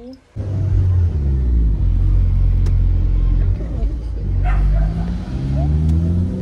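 Car engine and road rumble heard from inside the cabin, starting suddenly and staying loud; the engine note dips and then climbs again about two-thirds of the way through as the car speeds up.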